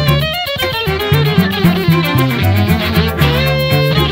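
Instrumental jazz-flavoured piece played by a string quartet with flute, the violin leading over a steady low cello line.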